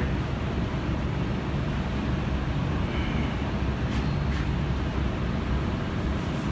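Steady low mechanical rumble with an even background noise, unchanging throughout.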